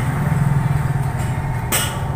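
Steady low hum in the background. Near the end comes one short, sharp hiss of breath drawn through bared teeth: a reaction to the heat of the chillies.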